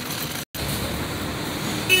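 City street background noise: a steady hum of traffic, broken by a brief silent gap about half a second in.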